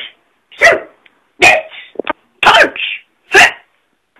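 Four short, loud, bark-like vocal calls, about a second apart.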